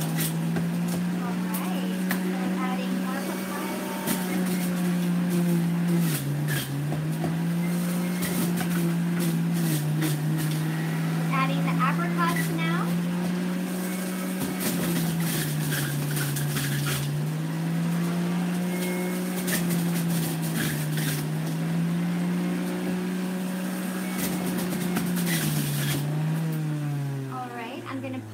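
Electric centrifugal juicer's motor running, its pitch sagging several times under load as produce is pushed down the chute, with clicks and rattles of pieces hitting the spinning basket. Near the end the motor is switched off and its pitch falls as it winds down.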